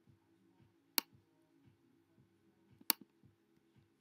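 Sharp clicks, likely from a laptop mouse or trackpad: one about a second in and a quick double click near three seconds. Under them runs a faint steady low hum from the laptop, which is busy uploading a video.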